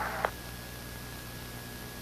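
Steady hiss and low mains hum of a broadcast audio feed, with a faint steady high tone running through it; a short click sounds just after the start.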